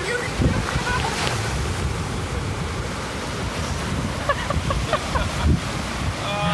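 Ocean surf breaking and washing up the sand, with wind buffeting the microphone. Brief laughter comes in about a second in, and faint voices sound later on.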